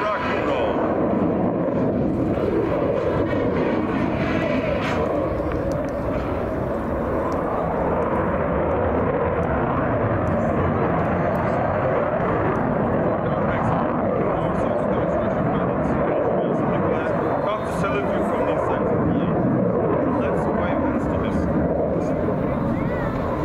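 F-16 fighter jet's engine heard from the ground as the jet manoeuvres overhead: a loud, steady rush of jet noise.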